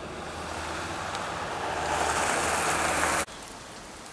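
Steady rushing, hissing noise that grows louder over about three seconds, then cuts off abruptly and leaves a quieter outdoor background.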